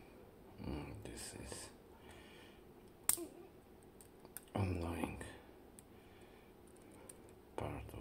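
Quiet, indistinct muttered speech twice, about half a second in and again near the middle, with a single sharp click about three seconds in from a metal tool working on the disassembled Bowley door lock's brass cylinder parts.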